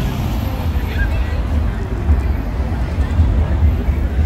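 A car driving past on a city street, over the chatter of people and a steady low rumble.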